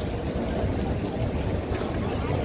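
Steady hubbub of a large crowd on foot, with a continuous low rumble underneath.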